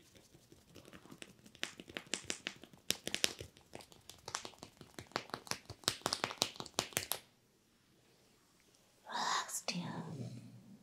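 Fingers rubbing and working a man's ear during a head massage: a quick run of crackling clicks that stops suddenly, then after a quiet pause a short rustle of hands moving over skin and hair near the end.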